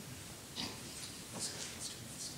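Quiet room tone in a meeting room, with a few faint, brief indistinct sounds.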